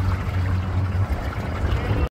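Motorboat underway: a steady low engine drone with water rushing and splashing along the hull.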